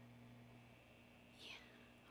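Near silence: room tone with a faint steady hum, and one brief, faint breathy hiss falling in pitch about one and a half seconds in.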